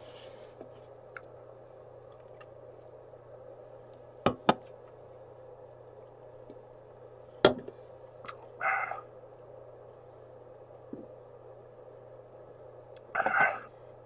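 Aluminium drink cans and a plastic water bottle handled on a desk: a few sharp clicks and knocks about four to seven seconds in, and two short rustling bursts near the middle and near the end, over a low steady hum.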